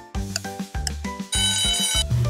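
Light children's background music with a regular beat; a little over a second in, a cartoon alarm-clock ring sound effect starts as the countdown timer runs out.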